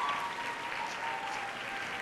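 Audience applauding, dying down gradually.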